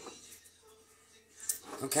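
Quiet room tone, with a single short click about one and a half seconds in, just before a woman's voice starts.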